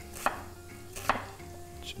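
Kitchen knife cutting an onion on a wooden cutting board: two sharp knocks of the blade hitting the board, just under a second apart.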